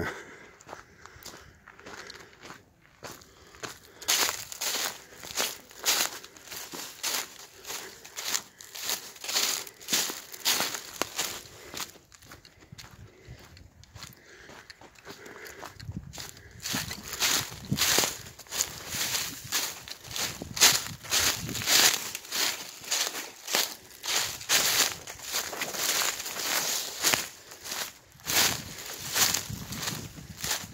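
Footsteps crunching through dry fallen leaf litter, about two steps a second, starting a few seconds in, softer for a few seconds in the middle and then firmer again.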